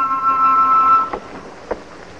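Film-score brass ending on a held two-note chord that cuts off about a second in, followed by low background noise with a single faint click.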